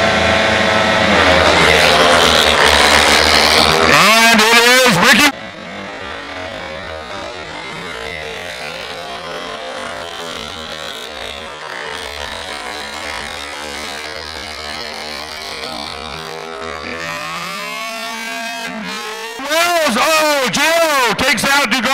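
Pack of speedway motorcycles, 500cc single-cylinder methanol engines, racing off the start. The engines are loud for about the first five seconds, then drop suddenly to a quieter, more distant sound for most of the rest. They grow louder again near the end.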